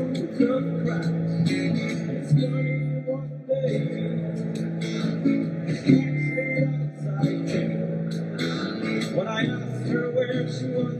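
Acoustic guitar strummed in a steady rhythm, a live band playing a song.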